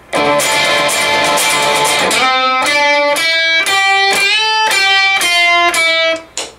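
Electric guitar: a strummed D minor chord rings for about two seconds, then a run of single picked notes follows, several of them bent up in pitch with string bends and slides.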